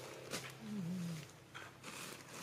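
Faint rustling and crinkling of a thin plastic garment bag as a hand works a finger through a hole in it, with a brief soft, low hum from a voice about halfway through.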